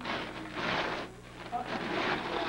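Gift wrapping paper being torn and pulled off a large present: a crinkling, tearing rustle lasting under a second, then a brief spoken "uh oh" near the end.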